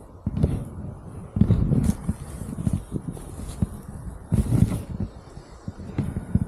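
Irregular thumps, knocks and rustling of gear being handled close to the microphone, with three heavier bursts.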